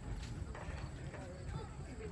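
Faint, distant voices of people talking across a football field, over a steady low rumble.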